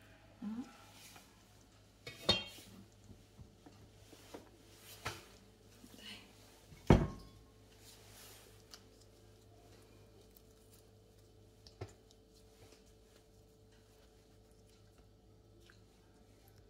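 A few scattered kitchen knocks and clinks of a cleaver and utensils on a wooden chopping board and a clay pot, the loudest a dull thump about seven seconds in, with quiet in between.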